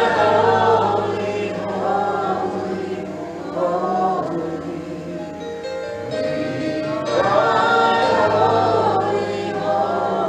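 A small worship group, a man's and two women's voices, singing a gospel song in harmony over a steady, sustained low accompaniment. The sung phrases swell loudest at the start and again from about seven seconds in.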